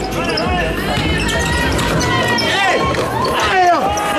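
A basketball being dribbled on a court during play, with voices and music over it.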